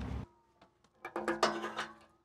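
Music starts about a second in, after a moment of silence: a quick run of sharp notes over steady held tones.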